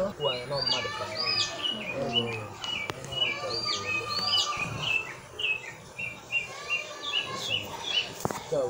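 A small bird chirping: a quick series of short, high notes that settles into a steady repeated run in the second half.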